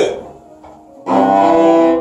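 A cello bowed on its top two strings at once, a double stop: one stroke starts about a second in, is held just under a second and stops shortly before the end.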